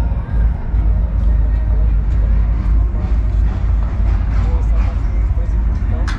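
Wind buffeting the handheld camera's microphone: a loud, steady low rumble, with faint voices behind it and a sharp click at the very end.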